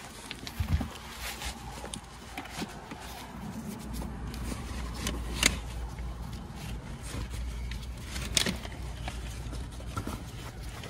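A hand handling an insulated delivery bag and the crumpled fabric or packaging in it, with rustling, scraping and two sharp clicks, one about five seconds in and one near the end. A low steady car rumble sits underneath and grows stronger about four seconds in.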